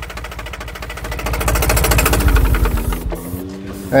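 Yanmar 4T90 four-cylinder diesel engine running with a fast, even firing rhythm, then shutting off about three seconds in.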